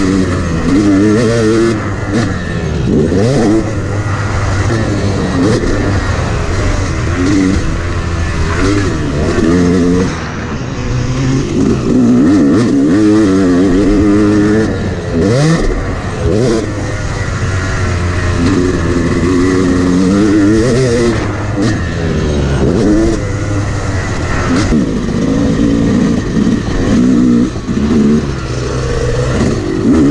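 Yamaha 250 two-stroke dirt bike engine revving hard and falling off again and again as the rider pins the throttle out of turns and shuts off before corners and jumps.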